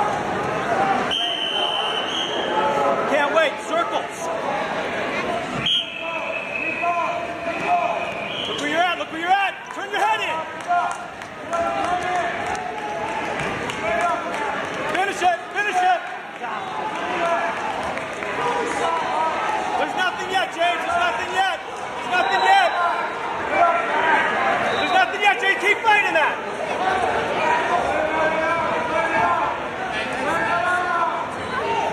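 Spectators and coaches calling out and shouting, several voices overlapping and echoing in a gymnasium.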